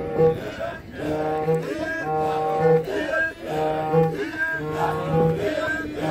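Maasai villagers singing a welcome song as a group: a low held chanted note comes back in short phrases about once a second, with higher voices gliding over it.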